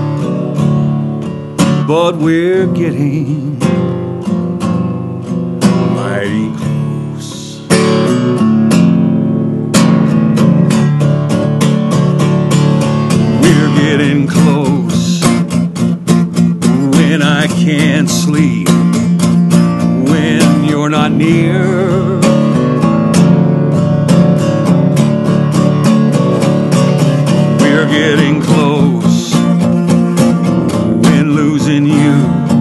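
Acoustic guitar instrumental break in a slow country song: single picked notes ringing out and fading for about the first ten seconds, then steady strumming.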